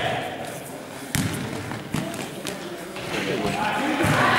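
A basketball bouncing on a sports-hall court: two sharp knocks about a second and two seconds in, under distant shouting from players.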